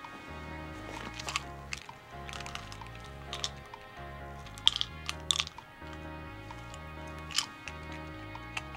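Low, slow soundtrack music, with several short sharp clicks and small rattles over it from a plastic pill bottle being opened and a pill tipped out into a hand.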